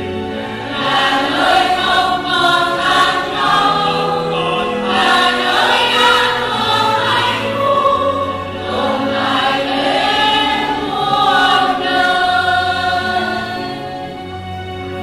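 A church choir singing a slow hymn with held notes, over a steady low accompaniment.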